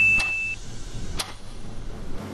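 A short, steady high electronic beep that stops about half a second in, then a single sharp click about a second later, over a faint hiss: an editing sound effect for a transition between question cards.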